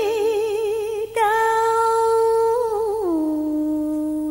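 A woman's voice in cải lương style, holding long drawn-out notes without clear words, with a wide vibrato. The sustained note breaks off briefly about a second in and starts again. Near the end it slides down to a lower note and holds it.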